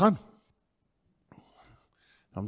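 A man's voice through a handheld microphone: a spoken word ends just after the start, then a pause, then a faint breathy whisper near the end.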